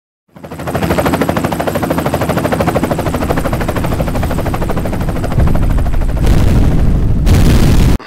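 Sound effect of an animated logo intro: a loud, fast rattle over steady low tones. It steps up in loudness twice near the end and cuts off suddenly.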